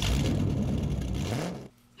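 Car engine starting up and revving, its pitch rising, then cutting off suddenly about a second and a half in.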